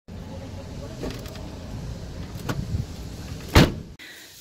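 Shopping trolley wheels rumbling over a concrete store floor, with a few light knocks and one sharp clunk near the end.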